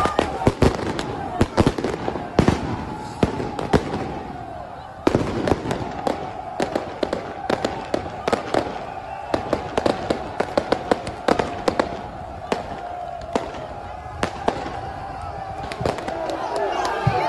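Firecrackers going off in an irregular string of sharp bangs, dozens in all, over a crowd of fans chanting and shouting.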